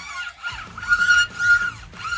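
A D'Addario string stretcher hooked under a new steel string on a Stratocaster and drawn along it, the string squeaking with a high, steady whistling tone in two strokes, about a second in and again near the end.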